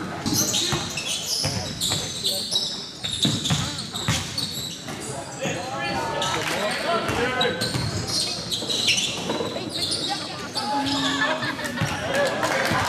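A basketball bouncing on an indoor court during play: a run of short, sharp knocks, with shouting voices echoing in a large sports hall.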